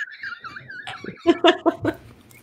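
People laughing: a high, wavering laugh trailing off at the start, then a quick run of short laugh pulses about a second in.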